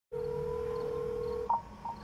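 A steady electronic telephone tone lasting about a second and a half that cuts off suddenly. A short, higher beep follows as the call is picked up.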